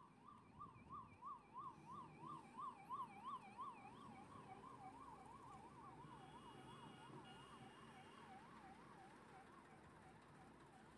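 A faint electronic siren warbling rapidly up and down, about three cycles a second. It swells and pulses most strongly in the first few seconds, then carries on more evenly and slightly lower.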